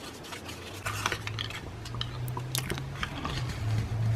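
A scored strip of paper being folded and bent by hand, crackling and crinkling in short irregular clicks. A low steady hum comes in about a second in.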